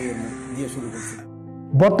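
Crows cawing behind a man's outdoor speech, which trails off about a second in. A held music chord follows briefly, and a man's narration starts near the end.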